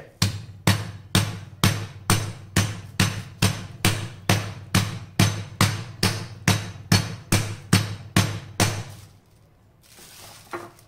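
A small cast-iron skillet pounding a chicken breast fillet through a plastic sheet on a cutting board, flattening and opening the meat. It lands as a steady run of dull blows, about two to three a second, and stops about nine seconds in.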